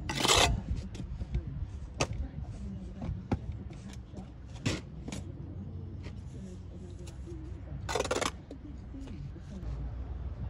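Steel brick trowel scraping mortar across the top of a brick course. There are two loud half-second scrapes, one at the start and one about eight seconds in, with several sharp clicks of the trowel against brick and mortar in between.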